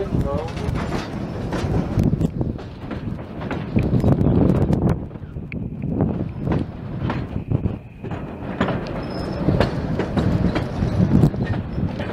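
Narrow-gauge passenger train rolling across a trestle, heard from an open car: a steady rumble of running gear with repeated clicks and clacks of wheels over the rails.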